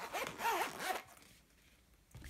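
Zipper on a zip-around wallet being pulled closed, a rasping zip lasting about a second and then stopping.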